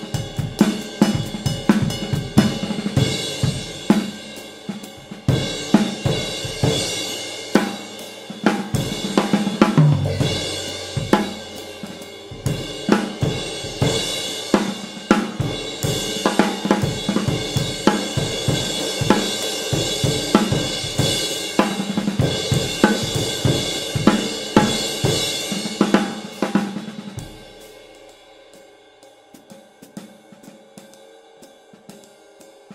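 Drum kit groove led by a Zildjian 20-inch A Medium Ride played with a stick, over snare, bass drum and hi-hats. This ride is thinner and lower in pitch than older A mediums, with a defined stick sound. Near the end the drums drop out and only quieter cymbal strokes go on.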